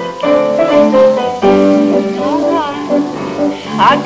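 Instrumental accompaniment with held chords plays a short link between verses of a comic song. A singer's voice comes back in right at the end. The sound is from an off-air mono recording of a live television broadcast.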